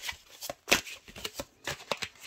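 A deck of tarot cards being shuffled by hand: a quick, irregular run of sharp card snaps and flicks, about eight in two seconds.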